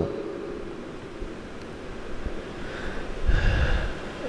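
Low hiss through a close handheld microphone, then about three seconds in a breath taken close into the microphone.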